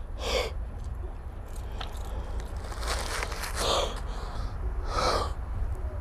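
A man breathing hard in short, noisy gasps, about four loud breaths spaced a second or more apart, the sound of panic. A steady low rumble runs underneath.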